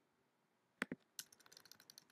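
Computer keyboard being typed on: two sharp key clicks a little under a second in, then a quick run of light keystrokes.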